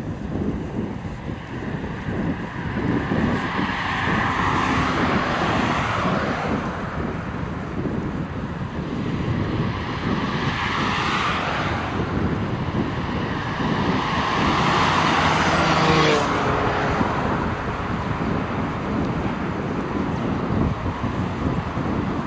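Highway traffic passing alongside: vehicles go by one after another in rising and falling swells of tyre and engine noise, over a steady rumble of wind on the microphone. About sixteen seconds in, a vehicle passes close and its engine tone drops in pitch as it goes by.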